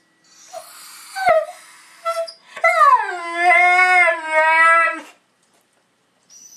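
Siberian husky howling: a few short whines in the first two seconds, then one long howl of about two and a half seconds that slides down in pitch and then holds steady with a slight waver, stopping abruptly about five seconds in.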